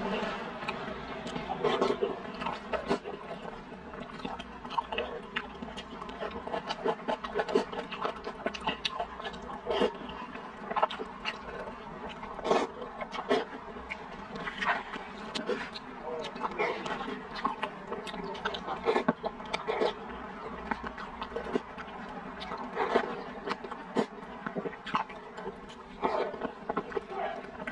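Close-miked eating of soft rice noodle rolls in chili sauce: wet chewing, slurping and lip smacks, coming as many irregular short clicks and pops.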